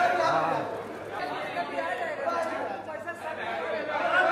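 Chatter of several voices talking over one another, with no clear words: photographers calling out on a red carpet.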